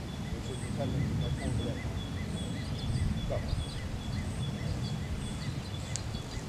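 Outdoor ambience: a steady low rumble with short, high chirps repeating at an even pace throughout.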